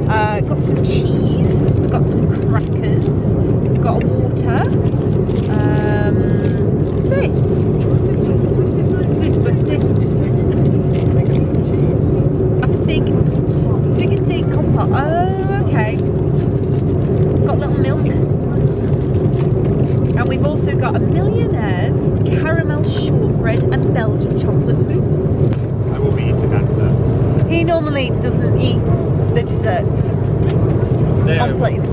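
Steady low drone of an airliner cabin in flight, with passengers' voices in the background and intermittent crinkling clicks of the plastic-wrapped meal tray being handled.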